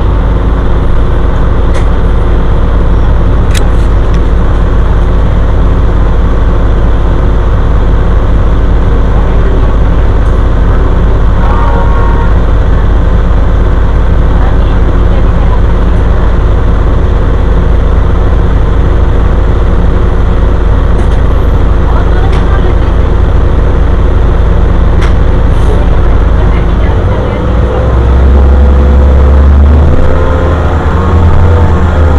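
Steady low rumble of a city bus's engine and road noise heard from inside the cabin while the bus moves; near the end the engine note rises and gets louder as the bus pulls ahead.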